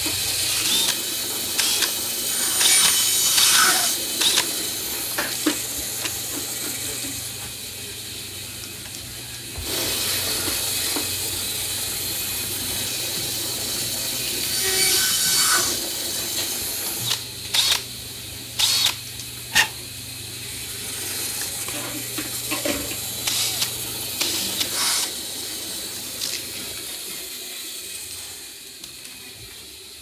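Workshop sounds of plastic tubing being cut and deburred: a bandsaw runs with a steady low hum that stops near the end, a cordless drill whirs in short runs, and plastic tubes click and knock as they are handled.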